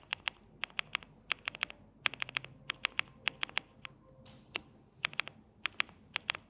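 Spark 67 mechanical keyboard with Marshmallow switches, its Enter and Shift keys at the right edge pressed one at a time in quick irregular groups of two to four. Each press is a short sharp click.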